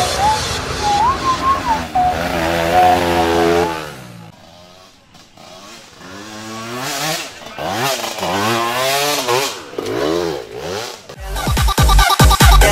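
Dirt bike engine revving up and down as the rider descends the track, easing off for a couple of seconds about four seconds in, then revving repeatedly again. Electronic music comes in near the end.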